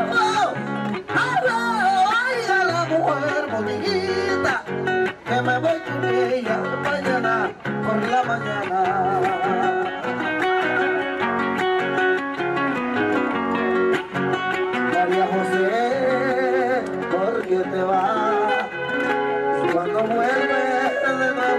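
Live Panamanian folk music: a man sings into a microphone, his voice wavering through long melodic lines, over an acoustic guitar, all amplified through a PA.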